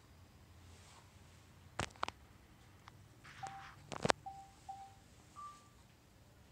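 A handful of short electronic beeps, most at one pitch and the last one higher, with a few sharp clicks in between, the loudest click just after the middle.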